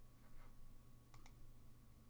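Near silence with a faint steady hum, and a quick pair of faint clicks about a second in from a computer mouse.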